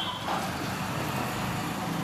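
Steady low hum and hiss of a running motor vehicle engine.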